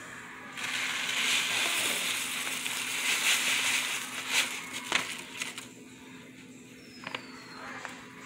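Dry rice-and-pasta mix poured from a crinkly plastic pouch into a pot: a rustling hiss of grains and crackling of the pouch, starting about half a second in and lasting about five seconds, with a few sharp crackles near the end of the pour.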